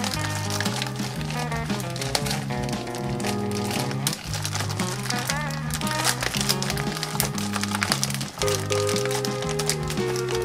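Instrumental background music with a bass line that steps between notes about twice a second.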